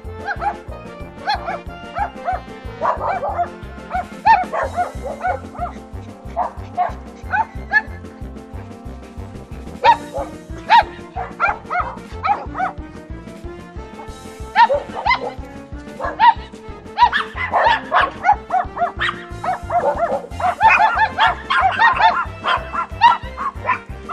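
Small toy poodles yipping and barking in quick, irregular bursts, busiest in the second half, over background music with a steady beat.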